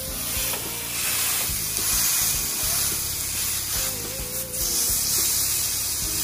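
Marinated chicken kebab skewers sizzling on a ridged grill pan over a gas flame: a steady hiss.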